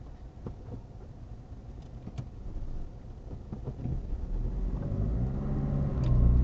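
Car engine and road rumble heard from inside the cabin through a dash camera, growing louder over the last two seconds as the car pulls away from a standstill.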